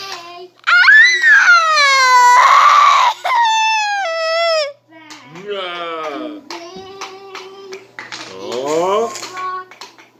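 A young child's high-pitched wordless vocalizing: loud drawn-out squeals with a harsh shriek in the first few seconds, then quieter wavering sounds.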